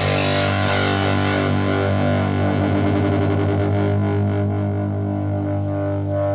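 Electric guitar (Reverend Charger HB with Railhammer Hyper Vintage pickups) through the JTH Electronics Typhon fuzz pedal into a Roland Cube 40GX amp. One fuzzed chord sustains, its bright top slowly fading, with a wavering, swirling shimmer in the middle of the sustain.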